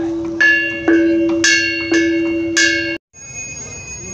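Bronze knobbed kettle gongs of a Balinese gamelan, struck unevenly by a small child with a stick: about five strikes, each ringing on with a bell-like tone. The ringing cuts off suddenly about three seconds in.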